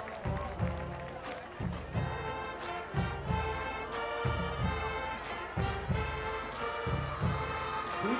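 Marching band playing a sustained brass chord progression, with bass drums beating steadily about twice a second.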